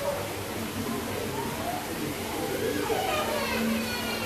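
Indistinct background chatter of adults and children, faint and unclear.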